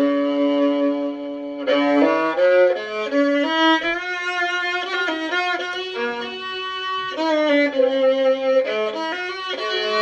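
A five-string fiddle strung with Prim strings, played solo with a bow: a slow tune of long, sustained notes, opening with one note held for nearly two seconds.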